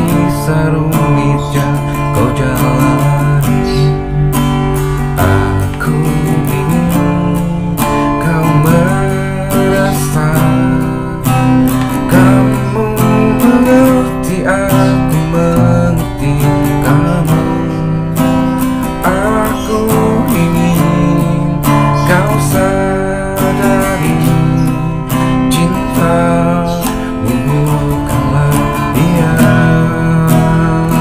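Acoustic guitar strummed with a man singing along, a steady unbroken song.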